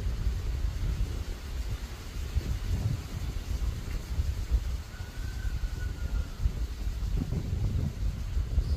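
Wind buffeting the phone's microphone: an irregular, gusty low rumble.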